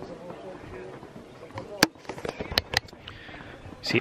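Footsteps going down open steel-grating stairs: a few sharp, irregular taps, the loudest about two seconds in, over faint background voices.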